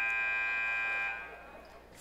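Gymnasium scoreboard horn sounding one steady electronic blast that cuts off about a second in, its echo fading in the gym: the signal that the timeout is over.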